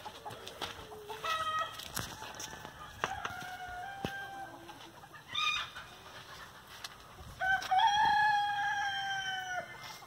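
Chickens calling: a few short calls in the first half, then one long crow of about two seconds starting about seven and a half seconds in.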